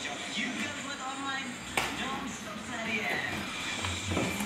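Television commercial audio playing: voices over background music from a TV broadcast. A single sharp click comes a little under halfway through.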